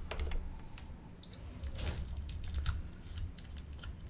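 Scattered light clicks and taps from small-parts handling at a repair bench, over a steady low hum. A very short high beep sounds a little over a second in.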